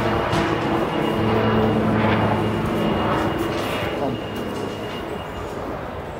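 A steady low mechanical hum with a thin high whine above it, fading after about three seconds.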